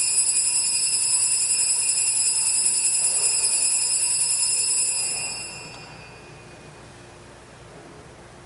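Altar bells rung continuously at the elevation of the host during the consecration, a steady high shimmering ring that dies away about five seconds in.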